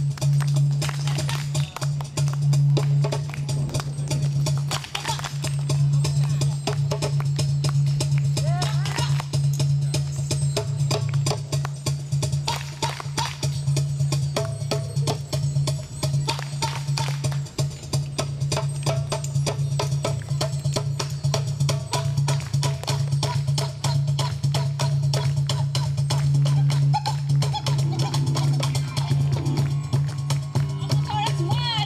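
Live band music: hand drums and a cajón beating a quick, busy rhythm under women's voices singing.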